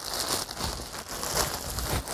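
A bag crinkling continuously as skeins of yarn are pulled out of it.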